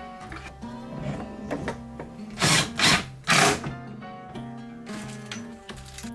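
Background music with a steady melody, cut into about halfway through by three short bursts of a power drill driving screws into the wooden enclosure panels.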